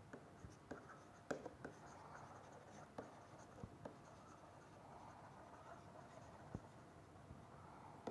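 Faint scratching of a stylus writing on a pen tablet, with a scattering of small taps as the pen touches down.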